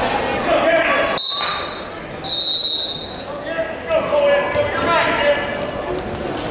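Coaches and spectators shouting in a gym hall, voices ringing in the room. A high, steady squeal sounds twice: briefly about a second in and again, longer, a little before the middle.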